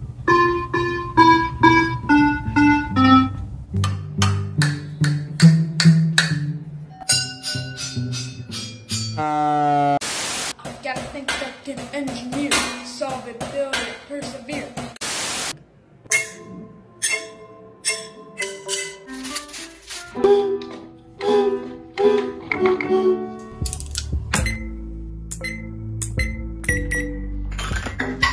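Children playing homemade instruments in a quick run of short clips: electronic piano notes set off by touching wired paper cups at the start, then singing with bucket drumming and a cardboard guitar. Two brief bursts of hiss break in partway through.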